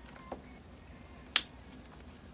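Two short clicks at a writing desk: a faint one near the start and a sharp, much louder one just past the middle.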